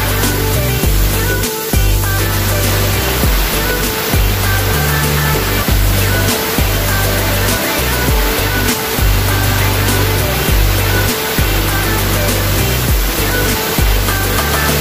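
Background electronic music with a heavy bass line, over the steady hiss of a steam cleaner's wand jetting steam into a car's interior and door sill.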